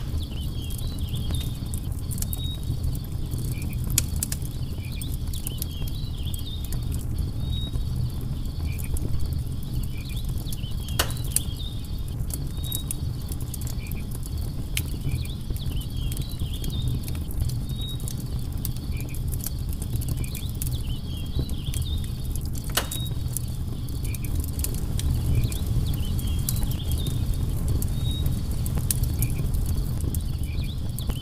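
Wood campfire crackling and popping over a steady low rumble of burning, with a few sharper pops standing out. Insects chirp in short repeated calls in the background.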